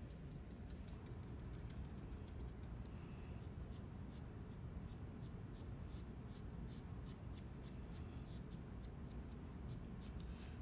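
Faint, quick scratching of a nearly dry paintbrush's bristles, about four or five short strokes a second, as white paint is dabbed off and dry-brushed onto a wooden block. A low steady hum sits underneath.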